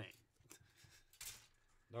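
Near silence with a few light clicks and one brief faint rustle: plastic model-kit parts being handled on the workbench.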